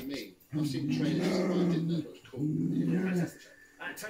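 A dog growling twice in long, steady growls, the first about a second and a half long and the second about a second, while she plays with a treat.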